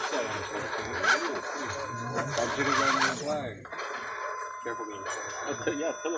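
Background talk and laughter from people nearby, mixed with music; a thin steady high tone comes in about halfway through.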